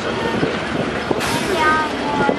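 Trackless road tourist train running steadily along a street, its engine and tyres making a continuous rumble under passengers' chatter. A short hiss cuts in a little past the middle.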